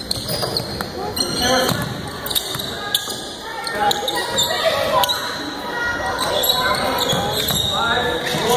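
Live basketball game in a large gym: a ball bouncing on the hardwood floor among scattered shouts from players and spectators, all echoing in the hall.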